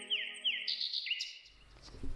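Bird chirping, a run of quick falling chirps about three a second, over the last held notes of flute music as they fade out. The chirps stop a little past a second in, followed by a faint low hiss.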